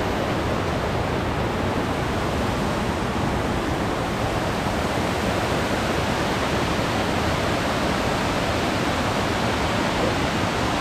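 Loud, steady rush of a mountain creek cascading over rocks and small waterfalls.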